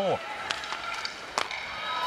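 Ice hockey play on the rink: a steady noise of skating and arena crowd, broken by two sharp clacks of stick on puck, about half a second in and again nearly a second later.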